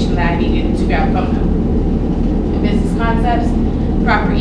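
A woman speaking, distant and hard to make out, in two short stretches near the start and about three seconds in, over a loud, steady low rumble.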